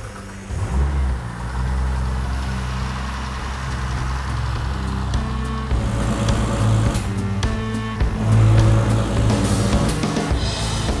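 Turbocharged Ford Barra straight-six in a Fox Body Mustang starting up about a second in and then idling steadily, run to circulate a cooling-system flush through the engine, with background music over it.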